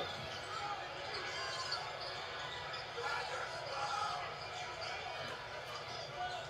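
Basketball game sound played through a TV speaker: a steady arena crowd murmur with a basketball being dribbled on the hardwood court.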